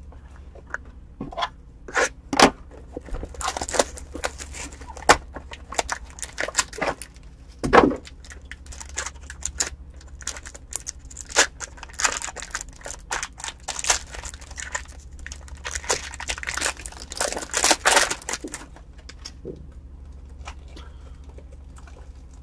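A trading-card box and its foil wrapping being torn open and crinkled by hand, in a run of sharp crackles and rustles with a thump about eight seconds in. A low steady hum lies underneath.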